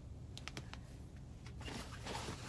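A few quick sharp clicks and crinkles of a plastic face-mask sachet being handled, then rustling near the end as a hand rummages in a nylon bag.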